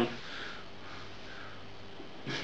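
A man's faint sniff, a short breath in through the nose, near the start, over a low steady room hum.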